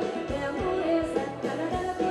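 Live band playing Thai ramwong dance music: a singer over instruments and a steady drum beat.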